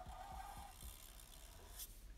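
Faint rubbing of a felt-tip marker drawn across paper, fading out after the first part, with a few faint light taps.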